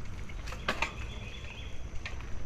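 A bike ride along a dirt trail: a steady low rumble of movement and wind on the microphone, with a few sharp rattling clicks about half a second in and a thin, wavering high whistle over the second half.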